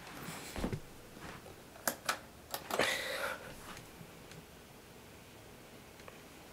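A few sharp clicks and a short rustle in the first half, then the faint steady whoosh of a Seville Classics tower fan's squirrel-cage blower running quietly.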